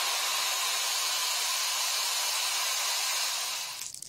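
Steady fizzing hiss of a tablet dissolving in a glass of liquid, fading out near the end.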